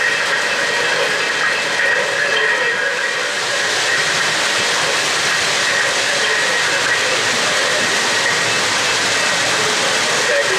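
Three-rail O-gauge model trains running, a steady rumble and hiss of wheels on the track, mixed with the hiss of a model steam locomotive's electronic sound system.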